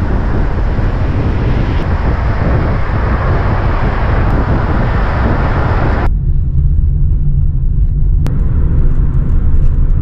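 A car driving at speed: loud wind and road hiss from beside the open window. About six seconds in it cuts abruptly to a low, steady road-and-engine rumble heard inside the closed cabin.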